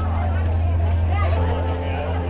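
Steady low drone of a cruise boat's engine under the chatter of passengers on deck, with music playing faintly behind.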